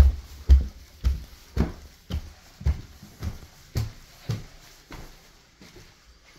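Footsteps climbing carpeted stairs: a dull thud about twice a second, stopping about five seconds in.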